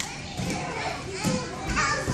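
Young children's voices, chattering and calling out. Near the end comes a soft low thud as a child drops from the bar onto a padded mat.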